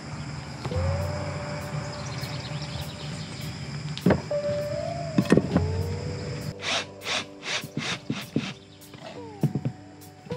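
Background music with sustained notes and a rhythmic beat. Over it come a couple of sharp wooden knocks about four and five seconds in, as lumber boards are set down on plywood.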